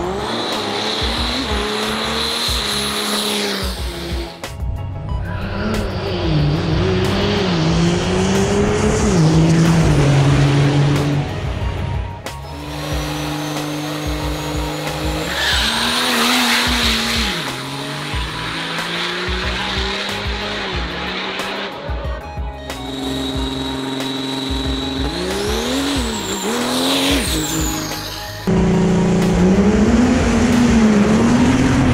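Diesel drag-racing pickup trucks launching and running hard down the strip, engines revving up and down with a high whistle above them in places. The sound cuts abruptly between several different runs.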